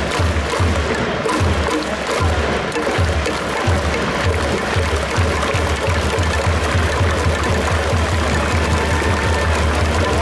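Stadium cheering music with a steady drum beat of about two beats a second, over the dense noise of a baseball crowd.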